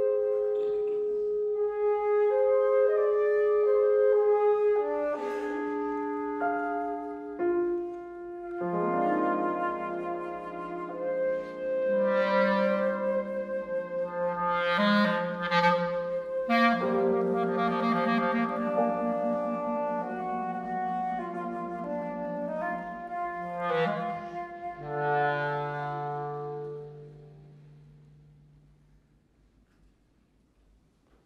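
Flute, clarinet and piano playing together in held, overlapping melodic lines. The texture thickens about nine seconds in and dies away near the end.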